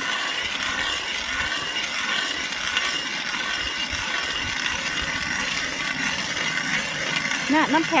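Hand-cranked ice auger boring into river ice: a steady scraping grind as the spiral steel blades are turned and cut down through the ice.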